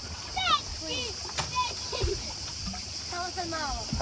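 Swimmers splashing in calm sea water close to a boat, with a steady wash of water and several short, high shouts of children scattered through it.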